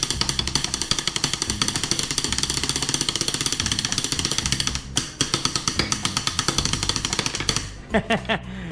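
Wooden drumsticks playing fast rolls and fills on bare aluminium injection-mold blocks laid on a workbench, like a makeshift drum kit: a quick, steady run of sharp metallic taps. It breaks briefly about five seconds in, then runs on until just before the end.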